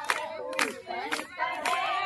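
A group of women singing a Haryanvi folk song together in unison, with rhythmic handclaps about twice a second.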